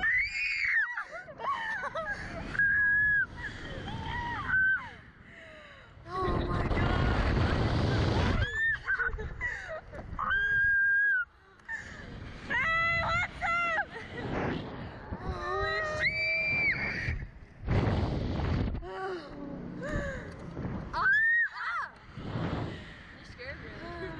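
Two young women screaming, shrieking and laughing on a reverse-bungee Slingshot ride, in a string of high held screams and short yelps. Between the screams, gusts of wind rush over the microphone as the capsule swings.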